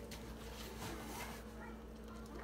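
Soapy sponges squeezed and squished by hand in a tub of foamy water, giving short wet squelches. A brief high-pitched vocal sound is faint in the background about halfway through, over a steady low hum.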